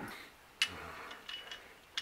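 A few faint clicks and light metallic ticks from handling small camp-stove parts, with one sharper click about half a second in.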